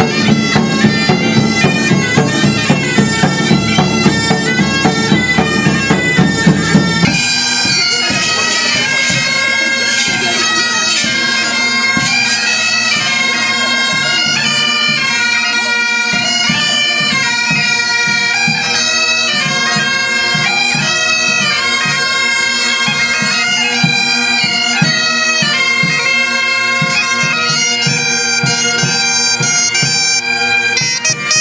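Several bagpipes play a lively tune over their steady drones, with a drum beating time. About seven seconds in, the sound changes abruptly to another bagpipe-and-drum band.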